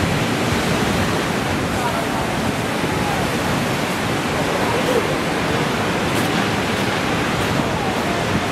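Ocean surf breaking on the reef, a steady, unbroken rushing noise, with faint voices in the background.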